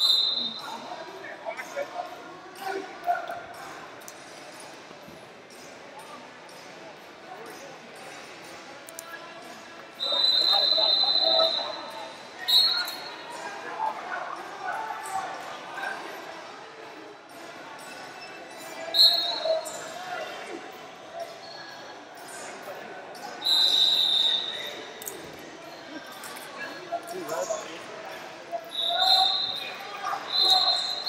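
Referee whistle blasts, each one steady shrill tone of about a second, about five times across the stretch, over voices and shouts echoing in a large gym hall.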